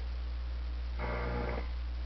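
Steady low mains hum from a Western Electric 10A tube radio receiver and its amplifier through the loudspeaker, in a pause of the broadcast. The owner puts the hum down to bad capacitors. A short pitched sound from the broadcast comes through about a second in.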